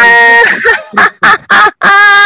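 A raised human voice: one long, loud vowel held at a steady pitch for about half a second, then a run of short shouted syllables with brief gaps between them.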